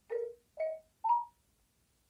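Fisher-Price interactive plush puppy toy playing three short notes through its small speaker, each higher than the last, a brief electronic jingle between its songs.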